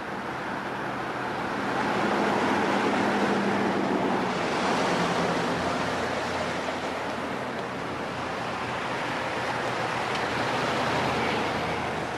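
Street traffic: cars driving past, a steady rush of tyre and engine noise that swells as vehicles go by, with a low engine hum in the first few seconds.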